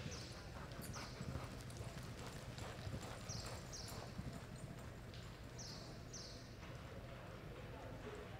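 A horse's hooves loping on soft dirt arena footing.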